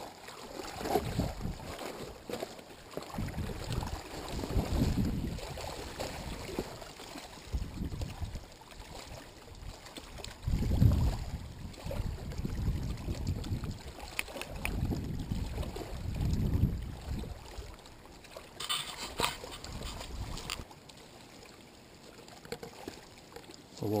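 Wind buffeting the microphone in low, uneven rumbling gusts, with a brief rustle near the end.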